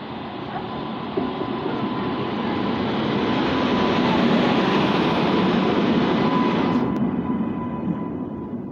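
WAP-7 electric locomotive running past at close range as it enters the station, a dense running rumble that grows louder to a peak about four to six seconds in, with a thin steady high tone throughout. The upper hiss cuts off suddenly about seven seconds in as the locomotive's end goes by.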